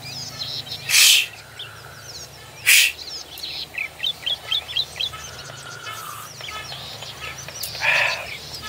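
Small birds chirping outdoors in a run of quick short calls, densest in the middle. Two loud, short rushing noise bursts come about a second in and just under three seconds in.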